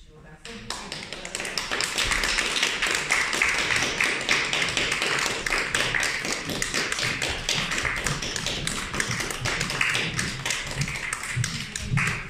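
Audience applause: hands clapping start about a second in and quickly build to a steady, dense clatter.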